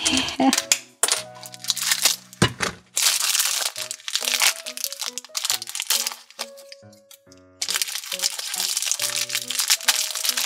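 Crinkly plastic toy wrapper being torn open and crumpled in the hands, in dense stretches from about three seconds in with a short pause near seven seconds. Background music plays throughout.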